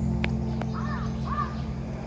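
A crow-family bird calling twice in the middle, two short calls about half a second apart.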